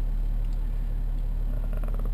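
BMW E70 X5 idling, heard inside the cabin as a steady low hum.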